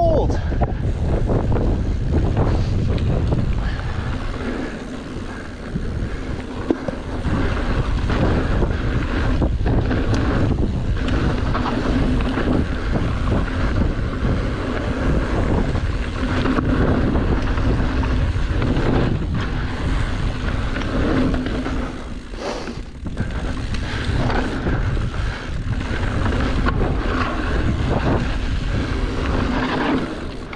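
Wind buffeting the microphone of a camera on a mountain bike riding down rough dirt single track, with scattered knocks and rattles from the bike over the trail. The noise eases briefly twice, once about five seconds in and again a little past the twenty-second mark.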